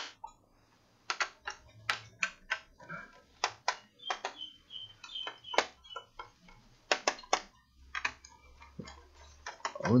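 Irregular sharp clicks and light taps of hands working on an opened laptop's CPU heatsink assembly, several a second with short gaps.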